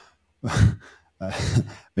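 A man's short breathy exhale, like a sigh, about half a second in, followed a moment later by the start of his speech.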